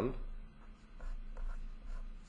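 Pen writing on paper: a few short, faint scratching strokes as a formula is written out by hand.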